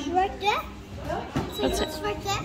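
Speech only: a young child talking.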